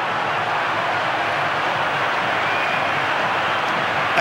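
Football stadium crowd cheering in a steady roar after a home goal.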